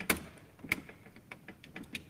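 Irregular clicks and knocks from handling the laptop at the lectern while it reboots: a loud knock right at the start, a sharp click a little after half a second in, and a few lighter ticks after.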